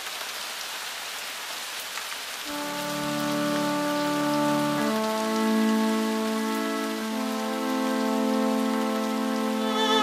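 Rain falling, then about two and a half seconds in a backing track's sustained chords come in over it, changing chord twice. An electric violin enters near the end.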